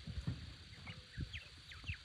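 Quiet farmyard ambience: a few short, high bird chirps, mostly in the second half, over scattered low thuds and rumble.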